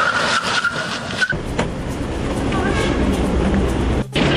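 A car driving up, with a high squeal in the first second or so, then a steady low engine rumble that builds toward the end.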